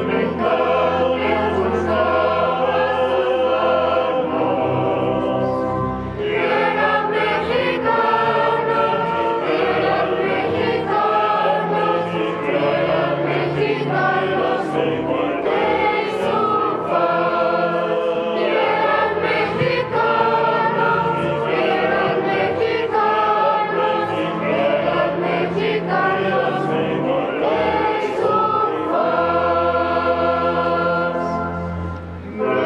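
A choir singing a hymn in long held phrases, the entrance hymn of a Catholic Mass, with a brief break about six seconds in before the next phrase.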